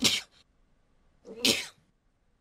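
A man's short breathy laugh: a sharp burst of breath at the start, then a second, partly voiced burst about a second and a half in.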